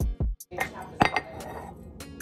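Acoustic guitar music cuts off in the first half second. Then kitchen handling sounds follow, with a sharp clink about a second in and a lighter one just after: a tea mug being handled while tea is made.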